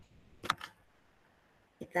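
Mostly quiet room tone with one sharp, short click about half a second in; a voice begins right at the end.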